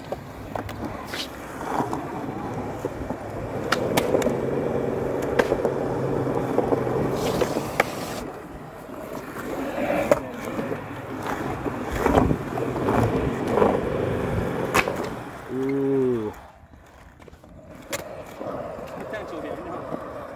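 Skateboard wheels rolling on concrete in a steady rumble, broken by several sharp clacks of the board hitting the ground.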